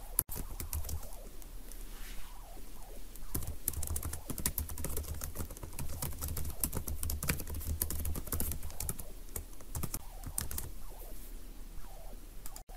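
Typing on a computer keyboard: runs of quick clicking keystrokes with short pauses between them.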